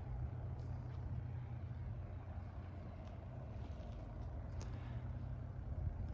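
Steady low outdoor background rumble, with two faint clicks about half a second in and near the end.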